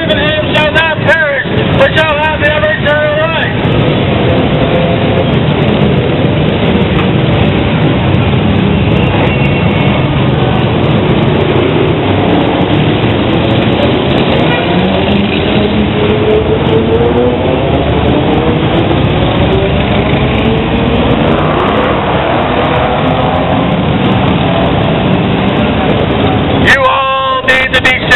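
Motorcycles and cars running past in slow street traffic, loud and continuous. The engine pitch rises and falls as bikes pull away and pass, with one long climbing engine note through the middle.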